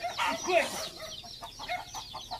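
Chickens clucking repeatedly in short, quick notes, with a person's brief shouted herding call to the cattle about half a second in.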